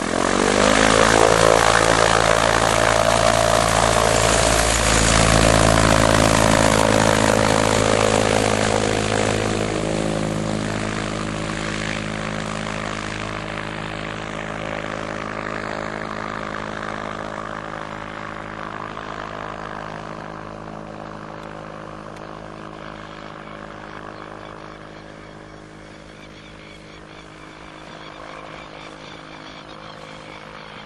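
An electric microlight trike's motor and propeller going to full power for takeoff. The loud steady propeller drone comes in suddenly, dips slightly in pitch after about eight seconds as the trike passes, and then fades gradually as it climbs away.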